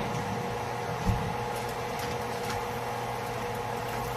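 Steady hum of a kitchen appliance motor over the faint hiss of diced potatoes frying slowly in a skillet, with one soft knock about a second in.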